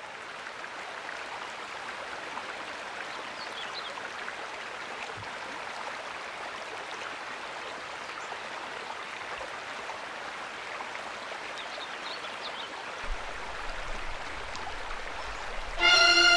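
Small forest waterfall splashing steadily over rock, a continuous rushing noise, with a few faint high chirps.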